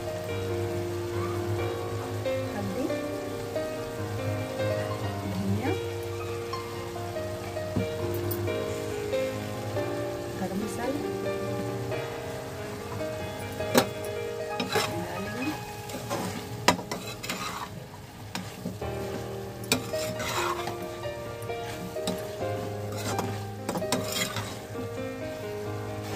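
Spiced vegetables frying in ghee in a metal kadhai, sizzling steadily while being stirred, with a spoon clinking and scraping against the pan several times in the second half.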